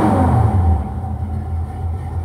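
G-body car's engine idling steadily, heard from inside the cabin, a little louder for the first second.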